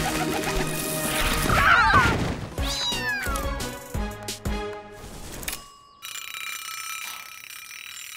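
Cartoon cat meowing over lively background music with a beat, two drawn-out meows with rising and falling pitch in the first three seconds. The music cuts out about six seconds in, leaving a quieter held music bed.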